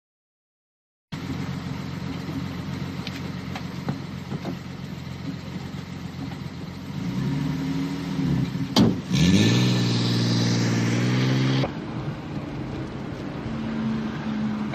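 A car engine starts running about a second in, steady at first. It revs up with a sharp click as it climbs, holds the higher revs for a few seconds, then drops back.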